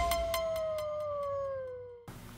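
A single long wolf howl sound effect, held high and then sliding slowly down in pitch while fading out by the end.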